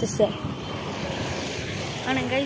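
Steady, even rush of distant engine noise.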